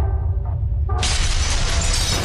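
Shattering crash sound effect of a wall breaking apart over a steady deep bass music bed; the crash starts suddenly about a second in and keeps going.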